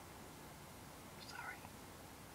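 Faint steady hiss of room tone, with one short, softly whispered word ("sorry") about a second in.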